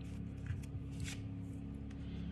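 Faint handling of a playing-card-sized oracle card: soft rustles and two light taps as it is picked up and set down on the tabletop, over a steady faint hum.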